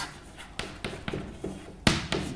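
A quiet pause in speech with low room sound, broken by one sharp click shortly before the end.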